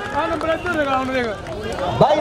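Men's voices shouting and calling over one another on the kabaddi ground after a tackle.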